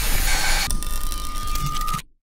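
Right-angle grinder with a 1.3 mm Norton Quantum 3 abrasive cutting disc cutting through 8 mm carbon steel dowel: a loud, steady grinding hiss. About two-thirds of a second in, a steady high whine joins it.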